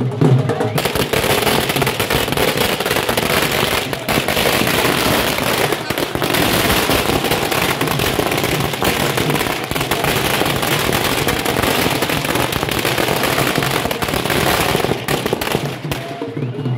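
A long string of firecrackers going off in a rapid, continuous rattle of bangs, starting about a second in and running for roughly fourteen seconds before it stops near the end.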